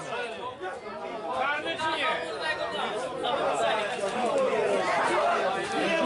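Many voices talking and calling out over one another: spectators and players chattering at a football pitch, getting louder about a second and a half in.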